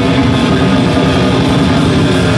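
Live metal band playing at full volume: distorted electric guitars, bass and drum kit in a dense, steady wall of sound.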